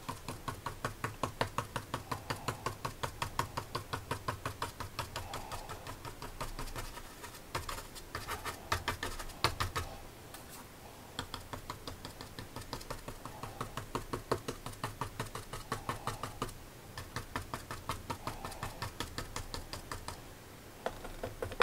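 Paintbrush dabbed again and again against heavy watercolour paper, stippling in foliage: a run of quick, light taps, several a second, with a few short pauses.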